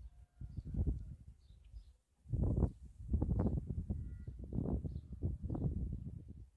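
Gusty wind buffeting the microphone: an uneven low rumble that drops out briefly about two seconds in, then returns. Faint bird chirps can be heard behind it.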